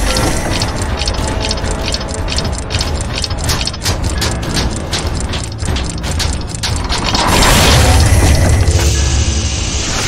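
Sound-design effects of clockwork gears and ratchets turning: a rapid run of sharp mechanical clicks over a deep rumble, swelling into a louder, fuller rush about seven seconds in.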